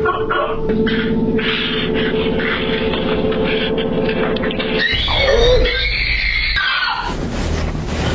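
A low, steady eerie drone, then about five seconds in a woman starts screaming, loudest just after it begins.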